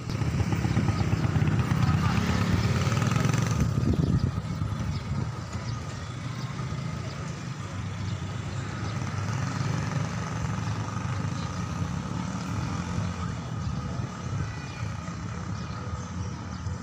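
Outdoor traffic noise: a motor vehicle running close by, louder for the first four seconds and dropping off sharply, then a steady lower background rumble.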